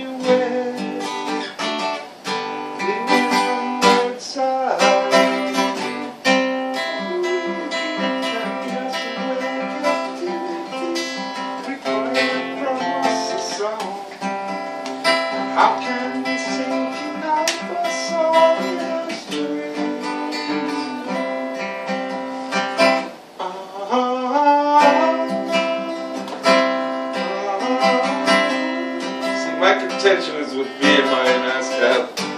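Acoustic guitar strummed steadily through a song, with a man singing along in places.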